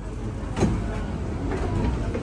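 Passenger doors of an SMRT Kawasaki–Nippon Sharyo C751B train sliding open at the platform, with a sudden clunk about half a second in, over the low rumble of the train.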